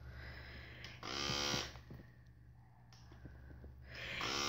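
Small electric motor of a Graco battery-powered nasal aspirator buzzing, once for under a second about a second in and again starting at the very end, as it suctions mucus from a congested child's nose.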